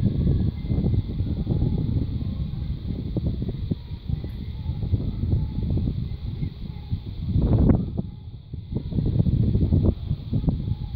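Wind buffeting the microphone: a loud, uneven low rumble that rises and falls in gusts, strongest about three-quarters of the way through.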